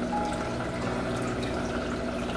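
Aquarium water trickling steadily over the low overflow wall into the filter box of an all-in-one tank, with a faint low hum beneath.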